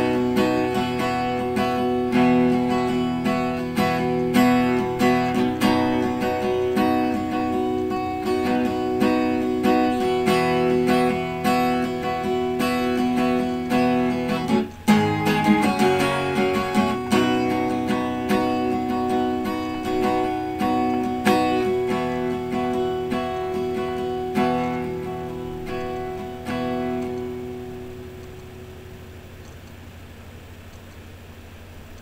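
Acoustic guitar strummed in a steady rhythm, with a brief stop about halfway through. Near the end the playing winds down to a last chord that rings out and fades, leaving faint hiss.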